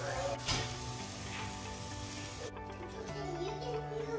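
Diced apples sizzling in a hot frying pan, an even hiss heard over soft background music, the sizzle dropping away about two and a half seconds in.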